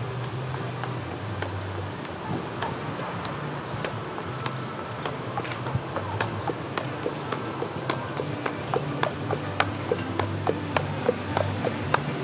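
Shod horse's hooves clip-clopping at a walk on an asphalt street as it pulls a carriage, getting louder over the second half as the horse comes close.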